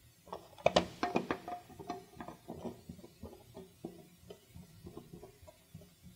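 A hand screwdriver driving a screw through a plastic wall cover into an outlet's screw hole: a quick cluster of clicks and scrapes in the first two seconds, then lighter irregular clicks as the screw turns.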